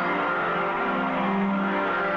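Live rock band playing a slow passage of held chords that shift pitch every half second or so, with no drum beat.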